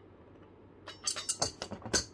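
About a second in, a quick run of sharp metallic clicks and clinks begins, from a steel adjustable wrench knocking against the stainless steel filter-bowl shield and its retaining bolt as the bolt is tightened and the wrench is set down.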